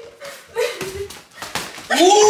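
Padded boxing gloves smacking several times during sparring, mixed with short yelps and grunts from the fighters.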